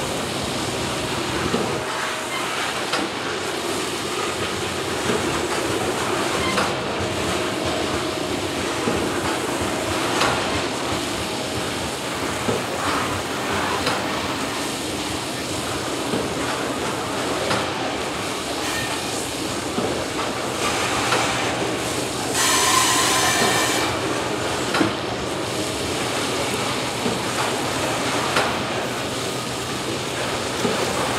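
Loaded coal cars of a freight train rolling steadily past, with wheels clattering on the rails, mixed with the hiss of the trackside sprayers pouring dust-suppressant onto the coal. About two-thirds of the way through there is a brief, louder, higher-pitched burst.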